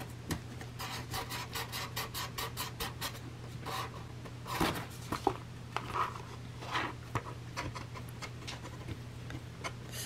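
A 5/32-inch drill bit twisted by hand through punched holes in a thick journal cover, rasping as it reams the holes wider. It starts with a quick run of short, even scraping strokes, about five a second, then goes on in slower, irregular scrapes.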